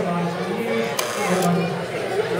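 A man's voice talking in a large hall, with one sharp click about a second in.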